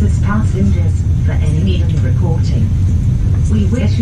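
Steady low rumble of an Intercity UIC-Z passenger coach running on the rails, with people's voices talking over it.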